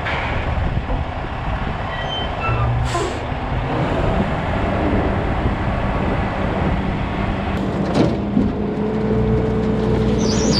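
Western Star tri-axle dump truck, loaded with about 17 tons of ripped asphalt, running and moving slowly over rough pit ground with a steady engine drone. Two brief sharp knocks, about three and eight seconds in, stand out over the drone.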